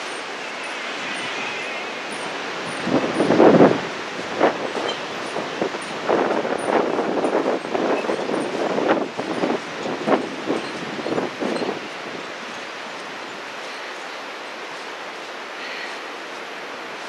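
Footsteps clanking and rattling on the metal deck of a suspension bridge: a loud cluster of knocks about three seconds in, then irregular clanks that stop about twelve seconds in. A steady rushing noise runs underneath.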